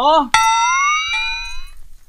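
A short musical sound effect: one sudden struck note that slides slowly upward in pitch for about a second and a half, with a second strike about a second in, after a brief spoken word.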